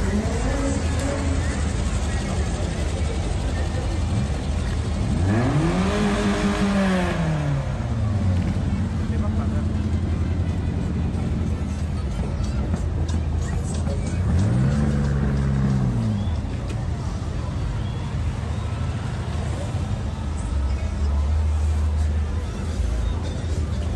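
A motor vehicle's engine revving up and back down twice, once about five seconds in and again near the middle, over steady music and crowd noise.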